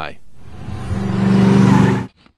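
Car engine revving as a car pulls away, growing steadily louder, then cutting off abruptly.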